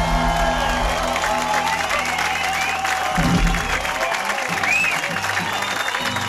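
A live rock band's held closing chord with guitars and bass, ending on a final low hit about three seconds in, while the audience applauds and cheers.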